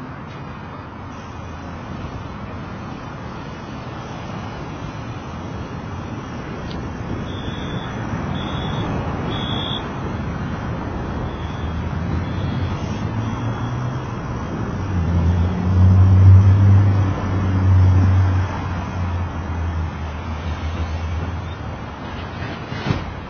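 City street traffic, growing louder, with a heavy vehicle's low engine hum rising to the loudest point past the middle and then fading. Three short high-pitched beeps sound near the start of the second quarter.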